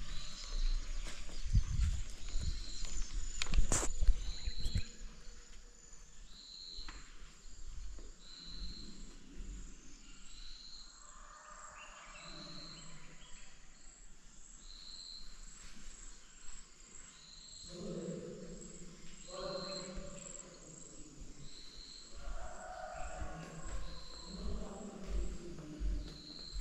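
Insects chirping: a steady, very high-pitched drone with a short high chirp repeating about every two seconds. In the first few seconds, louder thumps and a click come from the camera being handled and carried.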